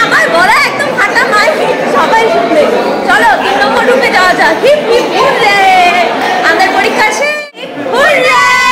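Several people talking at once: overlapping chatter of voices in a large, echoing hall. The sound cuts out suddenly for a moment shortly before the end.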